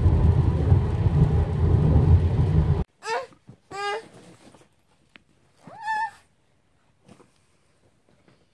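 Steady low road rumble inside a moving car, which cuts off about three seconds in. Then a baby makes three short babbling sounds.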